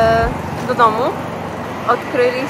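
Mostly a woman's voice in short bursts over steady street traffic noise. Background music cuts off just after the start.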